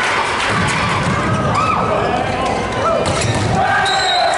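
Indoor volleyball rally: the ball struck with sharp thuds, a strong hit about three seconds in, athletic shoes squeaking briefly on the court, over players' shouts and arena crowd noise.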